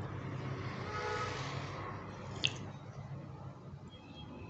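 A person sipping a drink from a mug, with a soft slurp over the first two seconds and then a small click about two and a half seconds in.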